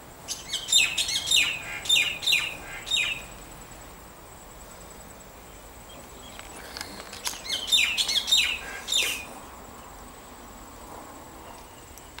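A songbird singing two phrases a few seconds apart, each a run of quick chirps that fall in pitch and last two to three seconds.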